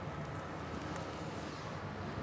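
Quiet, steady outdoor street background noise with no distinct events.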